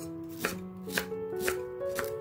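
Chef's knife chopping cabbage on a wooden cutting board: four sharp cuts, about one every half second, over soft background music.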